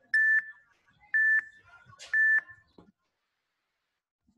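Workout interval timer beeping three times, one short high-pitched beep each second, counting down to the start of the next exercise interval.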